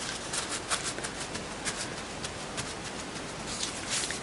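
Crumpled paper towel crinkling and rustling as it is handled and dabbed, in many small irregular crackles.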